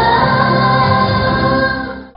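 Two women singing a pop ballad live into handheld microphones over backing music, holding one long note that fades out near the end.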